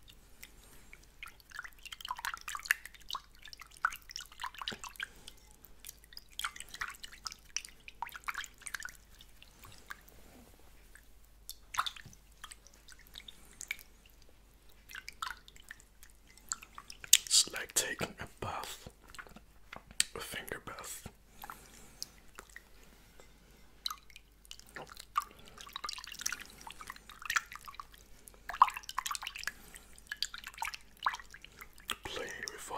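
Fingers dabbling in water in a hand-held ceramic bowl close to the microphone: irregular drips and small splashes coming in clusters, with the loudest flurry a little past the middle.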